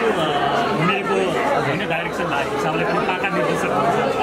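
Only speech: people talking, with a background of crowd chatter.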